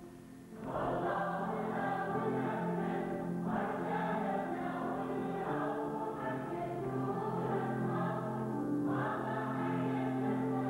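Church choir singing a liturgical hymn in long held notes. A new phrase begins about half a second in, and there are short breaks between phrases about a third of the way through and near the end.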